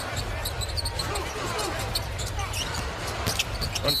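Arena sound of a basketball game in play: a basketball bouncing on the hardwood court over a steady crowd rumble, with short high sneaker squeaks and faint commentary.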